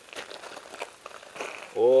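Footsteps crunching on gravel, faint and irregular, as someone walks slowly.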